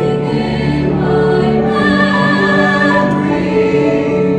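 Mixed choir of women's and men's voices singing in harmony, holding long chords that shift every second or so.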